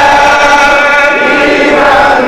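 Many men's voices chanting a Shia mourning elegy (noha) together, a loud, continuous sung chant.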